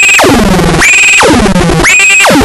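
Homemade mini modular CMOS synth built on 4093 and 4077 chips, putting out a harsh, buzzy square-wave tone. The pitch shoots up quickly and then glides down low, over and over, about once a second.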